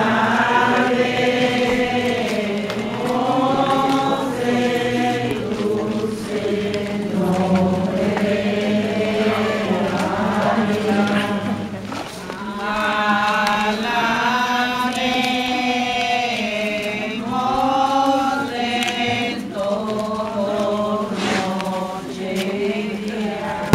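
A group of voices singing a slow religious hymn together in unison as a rosary procession, the melody rising and falling in long phrases with a brief pause about halfway through.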